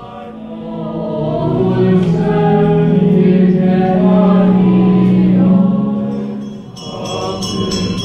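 A choir sings a slow sacred hymn, swelling to a long held note in the middle and fading briefly before the next phrase. A bright, high ringing joins in near the end.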